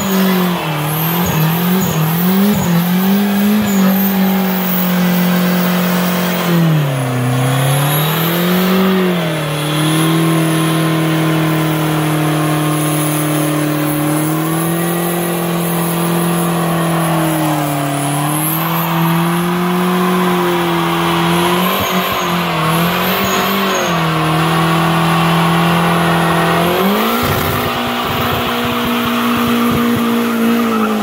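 Turbocharged 4G64 four-cylinder in a 1987 Chrysler Conquest doing a burnout, held at high revs over the screech of its spinning rear tyres. The revs dip briefly three times and climb higher near the end.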